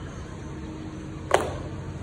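A sneaker dropped onto a tiled floor, landing with one sharp slap about two-thirds of the way in, over a steady low rumble.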